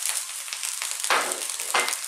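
Beaten egg frying in a hot frying pan beside fried rice: a steady sizzle, with two louder swells about a second in and near the end.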